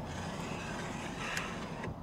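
Quiet, steady low rumble of a car's interior ambience, with no distinct events.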